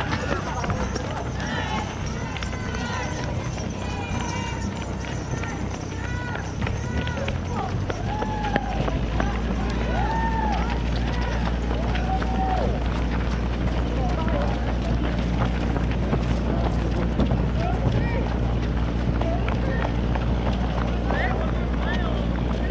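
Many overlapping voices calling out and chattering among passing race runners, with their running footsteps. A steady low rumble sets in about eight seconds in.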